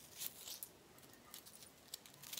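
Faint rustling of a small organza jewelry pouch being opened, with a few light clinks of a gold layered necklace chain inside it.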